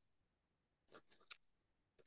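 Near silence in a pause of a video-call conversation, with a few faint short ticks about a second in.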